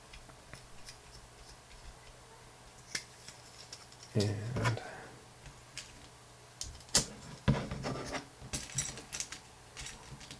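Small metal hardware clicking and tapping as aluminium standoffs and M3 screws are picked from a metal parts dish and fitted to carbon-fibre frame plates. Scattered light clicks, a louder handling cluster about four seconds in, two sharp clicks a little past halfway, and a quick run of clicks near the end.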